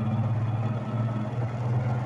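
Motorcycle engine running at an even, low pitch while riding slowly, heard from the rider's seat.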